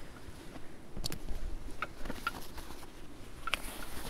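Hidden Woodsman M44 canvas haversack being unbuckled and opened by hand: a sharp click from the plastic side-release buckle about a second in, then a few lighter ticks over soft canvas rustling.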